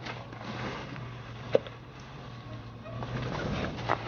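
Range Rover P38's 4.6-litre V8 running at low, steady revs as it crawls over rocks, with a sharp knock about one and a half seconds in and a couple more knocks near the end.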